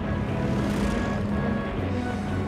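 Propeller aircraft engine drone from a diving warplane, steady and dense, over a sustained music score.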